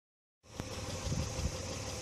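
A low, steady rumble that starts about half a second in, with a single click just after it begins.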